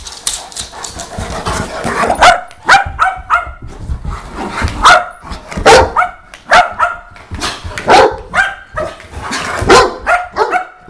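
Dogs at play, barking: a run of loud, sharp, fairly high-pitched barks that starts about two seconds in and comes every half second to a second, with quieter scuffling before it.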